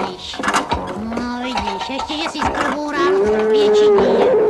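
Wordless vocal sounds over light background music, with one long held note near the end.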